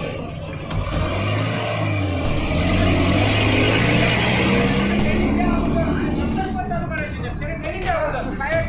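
A heavy road vehicle's engine pulling away from a toll booth, its low note rising slowly in pitch, with a loud hiss that swells and fades over several seconds. Men's voices come in near the end.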